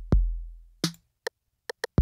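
808 drum machine loop. Deep 808 kicks boom and decay slowly, one near the start and another at the end. A snare hit lands just under a second in, with a few short hi-hat ticks after it.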